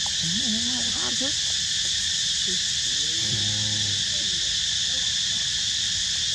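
Steady outdoor insect chorus, high and unbroken. Two short pitched calls are heard behind it, one about a second in and a longer one around three seconds in.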